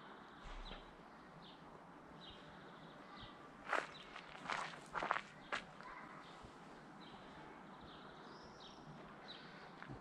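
Faint outdoor ambience with a few short, high bird chirps at intervals, and a handful of scuffing footsteps about four to five and a half seconds in.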